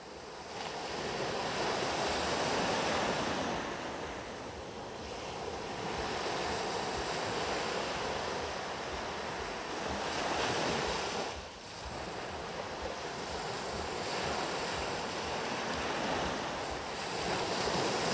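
Sea surf washing onto a beach, fading in over the first second, then swelling and ebbing slowly with the waves.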